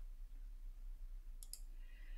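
A quiet pause with a steady low hum, broken by a short, faint click or two about one and a half seconds in.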